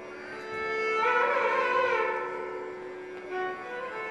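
Carnatic violin playing a melody in raga Mohanam in sliding, ornamented phrases over a steady drone.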